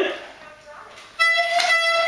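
Harmonica blown by a small child: one steady held note that starts just over a second in.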